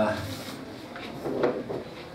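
A man speaking Portuguese into a handheld microphone through a PA in a hall, a word ending and then a pause, with one short knock about one and a half seconds in.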